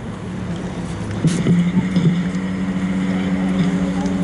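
Outdoor city street noise with wind on the microphone, and a steady low drone that sets in about a second in and holds on.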